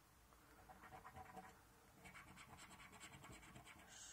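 Faint rapid strokes of a coin scratching the coating off a scratchcard, with a few scrapes about a second in and a denser run of quick strokes in the second half.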